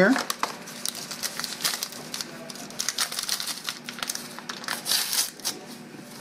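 Crinkling of a packet of gelatin dessert powder being handled and emptied into a bowl: a run of irregular crackles.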